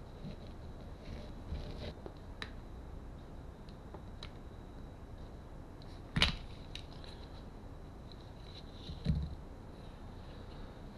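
Small plastic clicks and handling sounds from a Bluetooth helmet headset's casing being prised apart by hand. There are a few light ticks, one sharp click about six seconds in, and a dull knock near the end.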